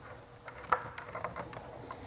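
Faint handling noise of a plastic scooter handlebar cover and headlight housing being moved into place, with one sharp click about two-thirds of a second in and a few lighter ticks.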